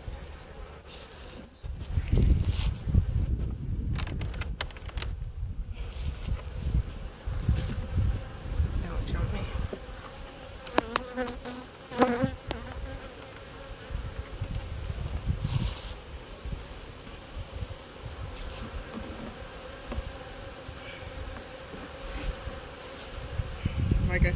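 Honey bees buzzing steadily around an open hive box, over a low rumble of handling. A couple of sharp knocks come about eleven and twelve seconds in, the second the loudest.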